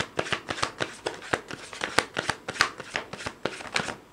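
A deck of tarot cards being shuffled by hand: a rapid run of crisp card snaps, about five a second, that stops abruptly near the end.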